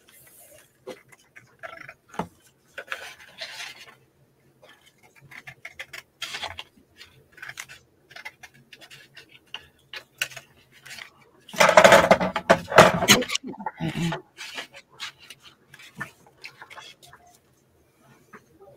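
Scissors snipping through patterned paper in short, separate cuts, with paper rustling as the sheet is handled. A louder burst of handling noise comes about twelve seconds in.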